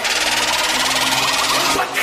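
Electronic intro sound effect: a steady, dense buzzing whirr that breaks off just before the end.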